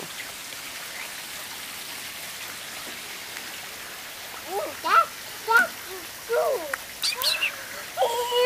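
Very young puppies whining, a string of short, high squeaks and yelps that starts about halfway through, over a steady background hiss.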